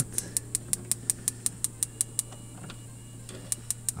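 Spark igniter of a campervan gas hob clicking rapidly, about five or six clicks a second, as the burner under a kettle is being lit; it pauses, then starts clicking again near the end. A steady low hum runs underneath.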